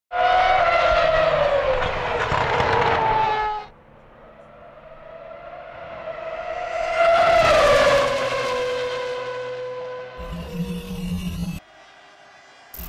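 Formula One car engine at high revs going past with its pitch falling, then building again to a second peak and dropping steadily as the car brakes hard from about 290 km/h. A low steady hum comes in near the end and cuts off just before it finishes.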